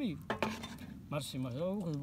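A few sharp metal clinks of a utensil against a stainless steel serving tray, over a voice.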